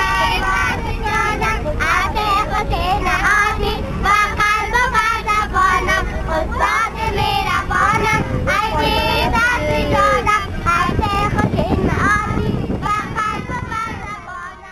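A group of children singing and shouting together inside a moving bus, over the low rumble of the bus. The singing fades away near the end.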